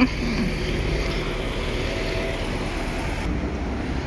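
Articulated hybrid city bus driving past close by, a steady running noise over road traffic.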